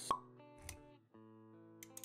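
Intro jingle for an animated logo: a sharp pop right at the start, a low thump a little over half a second later, then sustained music notes coming back in about a second in after a brief dip.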